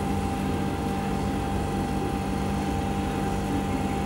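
Steady machinery hum with a constant low drone and a thin steady whine over it, unchanging throughout.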